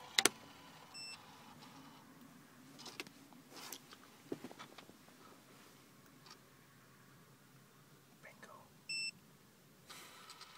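Fujikura 70S fiber-optic fusion splicer. Its windscreen lid closes with a sharp click, a short electronic beep follows, then faint clicks and whirs as it runs the splice automatically. A second, louder beep near the end signals that the splice is complete.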